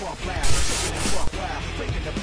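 Background hip-hop-style music with a steady beat, cut across about half a second in by a loud, hissing whoosh transition effect that lasts under a second.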